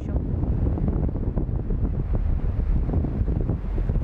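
Strong gusty wind buffeting the camera's built-in microphone in a steady low rumble, over small waves washing onto a pebble shore.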